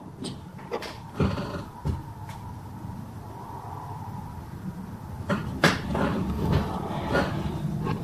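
Handling noises of a small plastic slide being picked up and fitted into a toy microscope: a few light clicks and knocks over a low rumble, the loudest knocks near the end.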